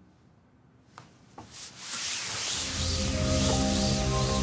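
A cloth cover dragged across a roulette table, a long rustling swish that swells from about halfway through, after a couple of small clicks. Music with held tones fades in underneath.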